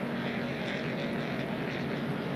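A pack of NASCAR stock cars racing, their V8 engines blending into one steady drone with a faint held pitch, heard through TV broadcast track audio.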